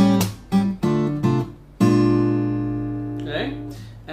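Takamine acoustic guitar fingerpicked through a short chord progression with a descending bass (D minor, D minor over C, B-flat 7): several quick plucked chords, then a last chord held from about two seconds in and left to ring and fade.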